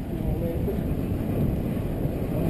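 Wind buffeting and road rumble on the microphone of a camera mounted on a moving road bike, a low uneven rumbling noise throughout.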